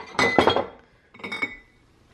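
Empty glass jars clinking against one another as they are handled: a few sharp clinks with a short ring in the first half second, then a second, softer group just past the middle.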